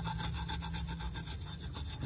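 A steel wool scouring pad, wet with thinner, scrubbing the aluminium lid of a pressure cooker around the safety-valve hole to clear off grease and crust. The rubbing is steady and scratchy.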